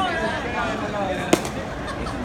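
A pitched baseball hitting a catcher's leather mitt: one sharp pop a little past the middle, over the chatter of nearby voices.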